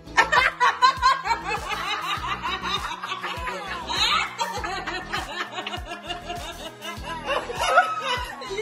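People laughing and snickering, the laughter breaking out suddenly at the start and going on throughout, with background music under it.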